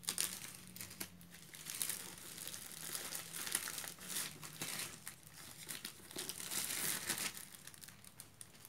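Clear plastic wrap crinkling and tearing as it is cut with scissors and pulled off a cardboard parcel, in irregular rustles that are loudest shortly before the end.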